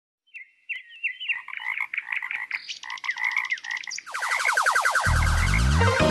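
Frog croaking: a run of short, repeated calls. About four seconds in a denser, faster sound joins them, and music with a bass line comes in near the end.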